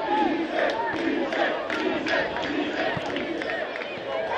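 Football crowd chanting and shouting, voices rising and falling in a repeating rhythm about every half second.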